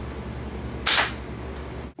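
Slingshot shot: the drawn rubber bands are let go, firing a paper pellet, with one short sharp snap about a second in. A steady low hum runs underneath.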